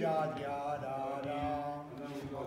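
A solo violin and a string orchestra playing slow, held notes over sustained chords. The pitches shift slowly as the melody moves.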